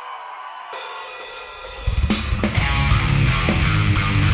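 A live metalcore band starting a song. A quiet rising build-up leads to cymbals coming in under a second in, then drums, bass and distorted guitars hit loud about two seconds in.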